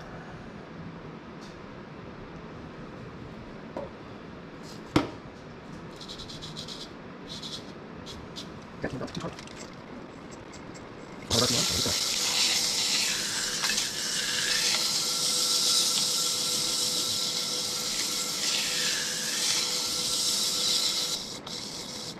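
Sandpaper hissing against the inside of a turned wooden bowl spinning on a wood lathe. It starts about eleven seconds in, runs evenly with a faint steady tone under it, and stops about ten seconds later. Earlier there is one sharp click about five seconds in.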